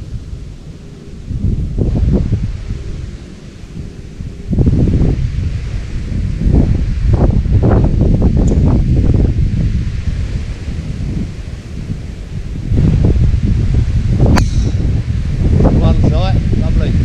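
Wind buffeting the microphone, louder from about four and a half seconds in. Near the end, one sharp crack of a golf driver striking the ball off the tee.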